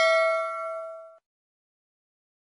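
Notification-bell ding sound effect of a subscribe-button animation, a bright chime that rings out and fades away within about a second.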